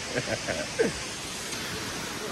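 Steady rushing noise of a distant waterfall, with faint chatter from other hikers during the first second.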